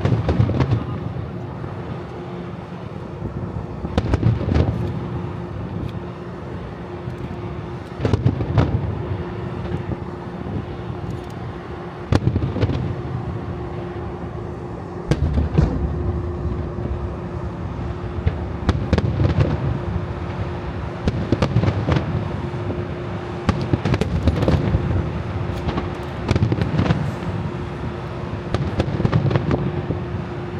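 Japanese star mine fireworks barrage: volleys of aerial shells bursting, with booms and crackling that come in waves every three or four seconds.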